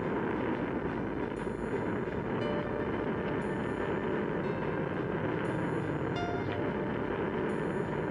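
Rocket boosters of a SNARK cruise missile firing at launch: a steady, unbroken rushing noise with no clear pitch.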